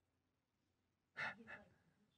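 Near silence, then about a second in two short breathy puffs of a person's voice, like a sigh or quiet exhale.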